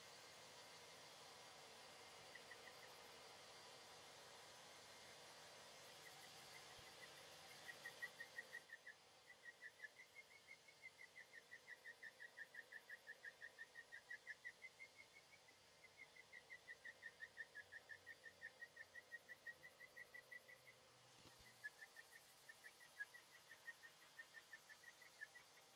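Mesh sanding sheet (Mirka Abranet) on a hand sanding block squeaking over car primer. It gives faint, short, high chirps, about four a second, one with each stroke, and they become regular a few seconds in.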